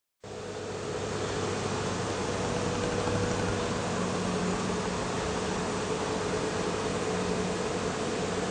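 Steady hiss with a faint low hum, with no piano notes played. It fades in at the very start.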